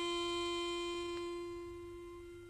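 A single held musical note, steady in pitch with clear overtones, slowly fading away.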